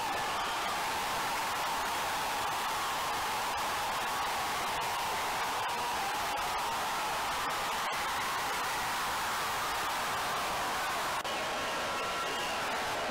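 Steady stadium crowd noise, an even hiss-like din with no distinct cheers or shouts, which changes abruptly near the end.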